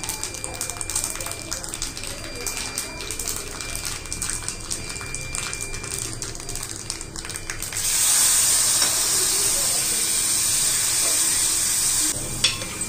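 Whole spices and a dried red chilli crackling in hot oil in a small aluminium kadai, a patter of small pops over a light hiss. About eight seconds in, a wet ingredient is ladled into the hot oil and it breaks into a loud, steady sizzle.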